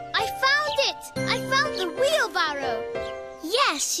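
Cartoon character voices making wordless sounds over gentle background music with held notes; a voice says 'Yes' right at the end.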